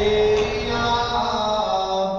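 Solo male voice chanting a manqabat, a devotional poem, in long held notes that shift slowly in pitch.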